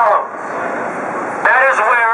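A man's voice through a megaphone, a phrase cut off at the start and another beginning about a second and a half in, with steady street hum in the pause between.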